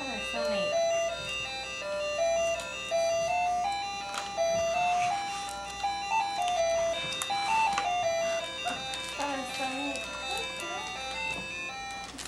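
Toy electronic keyboard playing a simple beeping tune, a melody of single notes stepping up and down that starts suddenly as a key is pressed.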